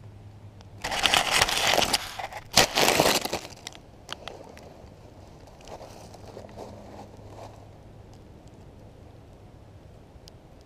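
Dry leaf litter crunching and rustling underfoot right next to the microphone: two loud spells in the first few seconds, then fainter scattered rustles.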